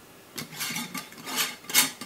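Metal screw-on lid being fitted onto a large glass jar and twisted shut: a run of scraping clinks of metal on the glass threads, getting louder toward the end.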